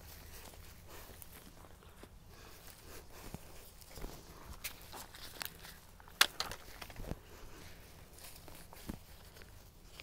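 Faint rustling and scattered light clicks of bedding plants being handled and tucked into the soil of a large stone planter, with a few footsteps as the planter moves around it; the sharpest click comes about six seconds in.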